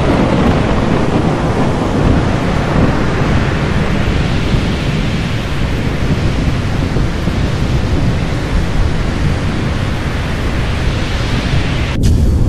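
Thunderstorm sound effect: a loud, steady roar of rain and rumbling thunder, heaviest in the low end.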